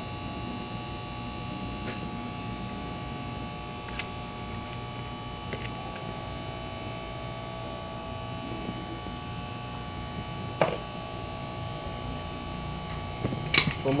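Steady electrical hum made of several fixed tones, with a few faint clicks and one sharper click about ten and a half seconds in.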